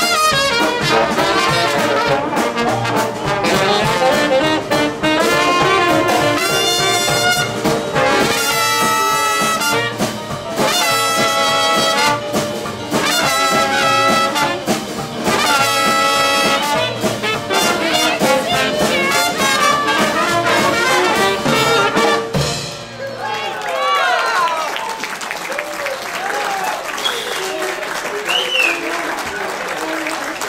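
Traditional New Orleans-style jazz band (cornet, trombone, saxophone, banjo, string bass, drums and piano) playing the final ensemble choruses of a blues. The tune ends abruptly about three-quarters of the way through, followed by audience applause and voices.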